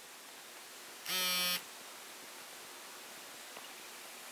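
A single half-second buzz about a second in from an Acer Iconia A500 tablet as it shuts down, over faint room hiss.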